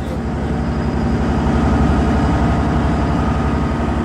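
A passenger ferry's engine running steadily under way, a loud low rumble with a fast, even pulse.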